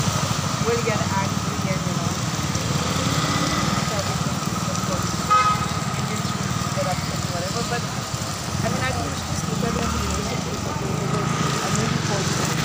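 Street traffic noise: a vehicle engine idling close by with a steady low rumble, voices chattering in the background, and a short horn toot about five seconds in.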